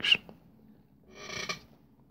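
The tail of a man's word right at the start, then one short breath about a second in.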